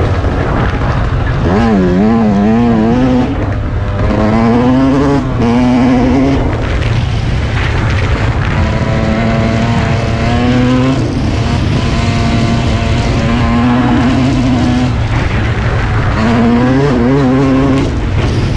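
Yamaha YZ125 two-stroke single-cylinder dirt bike engine under way, revving up and shifting several times: its pitch climbs, holds, and drops back at each shift.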